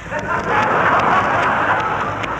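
Studio audience laughing, building over the first half second into a full, sustained laugh that eases off near the end.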